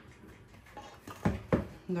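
Two light knocks of kitchen bowls being handled on a tiled countertop, the second a sharp click, after a quiet moment.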